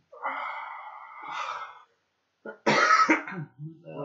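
A man's long, breathy wheeze of laughter, then a short, loud cough-like burst about two and a half seconds in.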